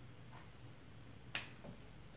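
Quiet small room with a faint low hum and soft ticks about once a second, broken by one sharp click a little past the middle and a fainter one just after it.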